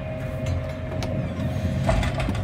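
Ford Expedition cabin with the truck in reverse: a low idling rumble under a steady, high-pitched electronic warning tone, which ends with a click near the end.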